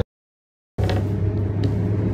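Dead silence for about the first three-quarters of a second, then a steady low drone of road and engine noise heard inside a moving car's cabin.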